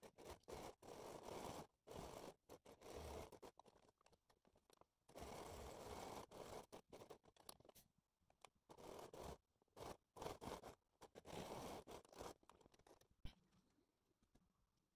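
Janome electric sewing machine, faint, stitching a seam in several short runs of a second or two with pauses between, and a single click near the end.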